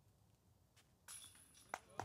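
Near silence, with a faint rustle a little after a second in and one short, sharp click near the end.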